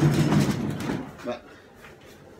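Home-made wooden workbench being pushed on its wheels across the workshop floor: a rolling rumble for about a second that then stops.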